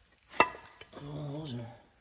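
A single sharp click or knock about half a second in, followed by a man's short, wordless murmur with a falling pitch.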